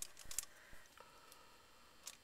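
Faint handling sounds as a wooden clothespin is clipped onto a card resting on aluminium foil: a few soft clicks and light rustles in the first second, then near quiet.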